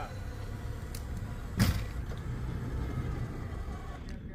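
Off-road vehicle engines running in a low, steady rumble during a snow recovery, with one sharp thump about one and a half seconds in.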